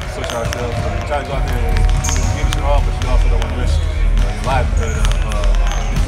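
A man talking close to the microphone, with basketballs bouncing on a gym court behind him as repeated sharp thuds.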